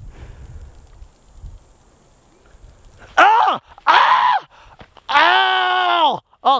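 A man groaning with his tongue held out of his mouth, reacting to a harvester ant crawling on his tongue. After about three seconds of faint low rumble come two short groans, then one long steady groan held to the end.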